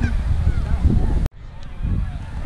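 Wind rumbling on the camera microphone, with a few faint honking calls. The sound drops out abruptly just past a second in, then returns quieter.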